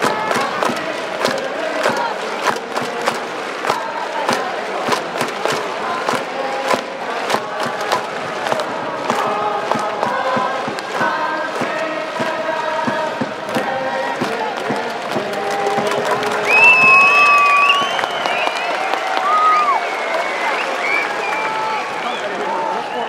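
Baseball stadium crowd cheering and chanting together, with clapping in the first half. A few loud, high calls stand out about two-thirds of the way in.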